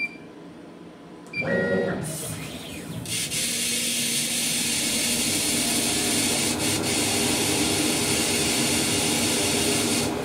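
A CO2 laser engraver with a rotary attachment starting a job. A short beep, then about a second in the motors whir as the head moves into place, with a brief rising and falling whine. From about three seconds a steady loud rush of air runs over a low machine hum while it engraves.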